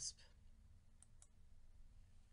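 Two faint computer mouse clicks, close together about a second in, against near-silent room tone.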